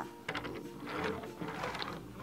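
Wooden toy car pieces being handled and wheels fitted: a few sharp clicks, then a light continuous rattle of wood clicking on wood and against the table.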